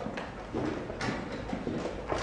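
Blitz chess: pieces set down on the board and the chess clock pressed, heard as a few short knocks, one just after the start and another about a second in, over a steady room background.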